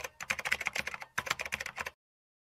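Computer-keyboard typing sound effect: a fast run of sharp keystroke clicks with two brief pauses, timed to text typing itself out on screen.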